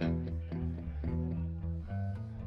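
Electric guitar and bass guitar playing a slow run of held notes through an amplified club PA, with no drums or vocals.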